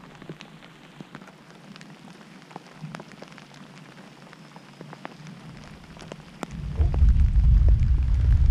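Light rain with scattered faint ticks of drops, then about six and a half seconds in a close thunderclap breaks into a loud, deep rumble that carries on.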